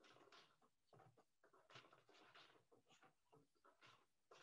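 Faint, irregular wooden knocks and rustles of a four-shaft floor loom being worked by hand: the beater pulled against the cloth and the shuttle handled between picks.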